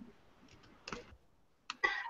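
A few short, scattered clicks on a quiet video-call audio line.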